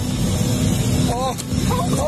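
Loud, steady rumble of a private jet's cabin, engine and airflow noise. Short high-pitched voice sounds, squeals or laughs, come in about a second in and again near the end.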